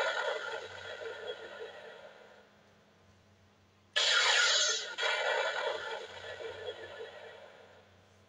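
Electronic blaster sound effect from a Buzz Lightyear talking action figure's small speaker: a loud, noisy zap that fades away over a couple of seconds. A second blast starts suddenly about four seconds in, when the arm button is pressed again, and swells once more before dying out.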